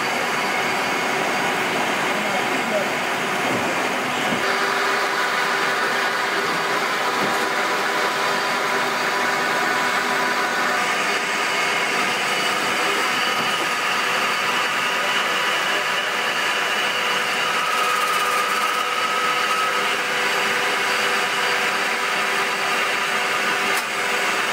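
Wickman 1-3/4" six-spindle automatic screw machine running after being switched on: a steady mechanical hum of its motor and turning spindles, with its coolant pump on. The sound grows brighter about four seconds in and again about eleven seconds in.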